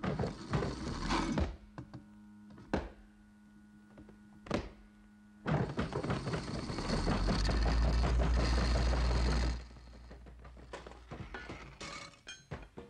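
Thuds and clatter of a figure wriggling inside a front-loading washing machine's drum, then a steady low hum with two sharp knocks. About five and a half seconds in comes a loud rumbling racket that builds for about four seconds and cuts off suddenly.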